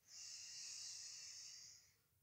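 A man taking one slow, deep breath in: a faint, steady airy hiss that lasts nearly two seconds and tapers off just before the end.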